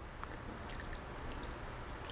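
Brandy trickling faintly from a bottle onto a wooden spoon held over a pan of cream sauce.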